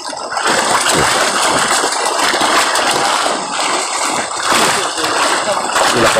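Milkfish crowded in a harvest net at the pond's edge, thrashing and splashing: a dense, continuous churning of water.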